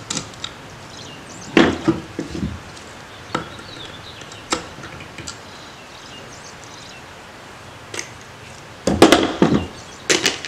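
Needle-nose pliers working a plug out of a Rochester Quadrajet carburetor body: scattered metal clicks and knocks against the carburetor and the plywood board, with a louder clatter near the end.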